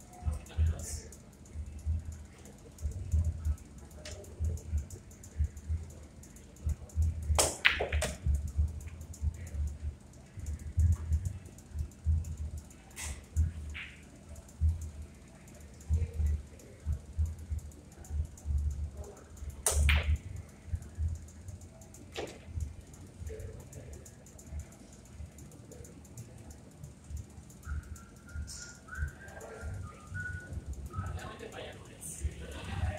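Pool balls clacking as shots are played: sharp clicks of the cue tip and of ball striking ball, including a quick double clack about a quarter of the way in and single clacks later. Irregular low thumps and murmur sit underneath.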